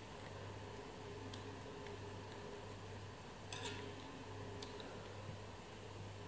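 Faint, light handling sounds of hands working the wired stems of a sugar-paste blackberry sprig: a few soft clicks and rustles, the loudest small cluster about three and a half seconds in, over a steady low hum of room tone.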